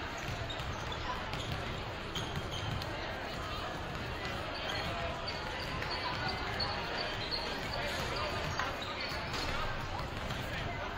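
Several basketballs being dribbled and bouncing on a hardwood gym floor, over a steady background of crowd chatter.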